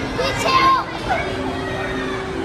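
Busy arcade hubbub: children's voices and calls over steady electronic arcade-machine tones, with one child's high call loudest a little under a second in.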